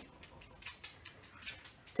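Faint, scattered small clicks from hands handling a small object, two of them a little louder, about two-thirds of a second and a second and a half in, over quiet room tone.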